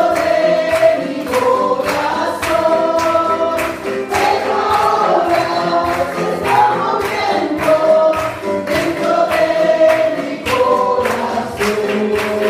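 Congregation and a lead singer on a microphone singing a Spanish-language worship song, with a steady beat under the held sung notes.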